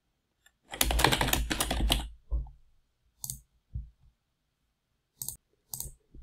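Fast typing on a computer keyboard for about a second and a half, then a few single clicks spaced out over the next few seconds.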